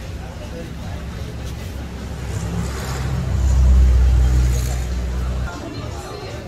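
A road vehicle passing close by with a low engine and tyre rumble that swells to a peak about three and a half seconds in, then cuts off abruptly.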